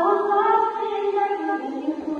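A group of young voices singing a melody together in unison, unaccompanied, each note held before stepping to the next.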